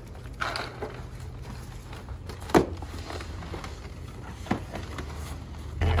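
Large cardboard-boxed workbench being lifted and slid into the back of a Jeep: scattered knocks and scrapes, the sharpest about two and a half seconds in, over a faint low hum. Near the end a louder steady low hum sets in.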